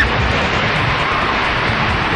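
Wind rushing over the microphone as a carnival thrill ride spins, a steady loud rush with irregular low buffeting thumps.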